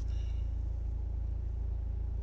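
A car's steady low rumble, heard from inside the cabin.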